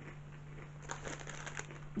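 Faint crunching of Space Raiders corn snacks being chewed, a scatter of small crunches in the second half, over a steady low hum.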